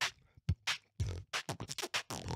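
Solo beatboxing into a microphone: mouth-made kick and snare hits with bass-heavy strikes at about half a second and one second in, then a quick run of short snare and hi-hat-like clicks near the end.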